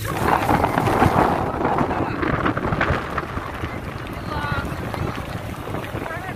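Wind buffeting the microphone: a rough, gusty rushing noise that is strongest for the first three seconds and then eases off.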